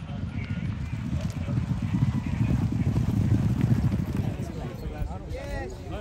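Racehorses galloping on turf, a fast drumming of hoofbeats that grows loudest as the field passes close, about two to four seconds in, then fades. Voices shout near the end.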